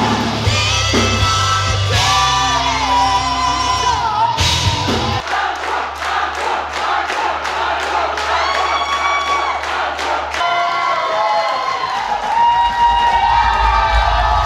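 A rock band playing live with a singer, a crowd cheering along. In the middle the bass drops out for a few seconds, leaving the vocals over a steady beat, before the full band comes back in.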